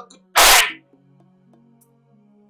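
A sudden loud, short burst about half a second in, then soft background music with low held notes.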